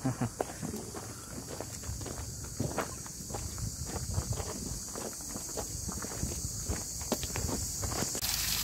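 Footsteps on a gravel and dirt path, an irregular run of scuffs and steps from people walking, over a steady faint hiss.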